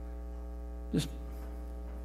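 Steady electrical mains hum on the recording, with a buzzy row of overtones above it; a man says a single word about a second in.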